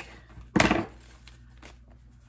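Packaging being handled: one brief loud rustle about half a second in, then a few faint clicks.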